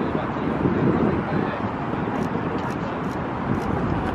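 Steady outdoor rumble and hiss, like wind on the microphone and distant traffic, with muffled voices in the first couple of seconds.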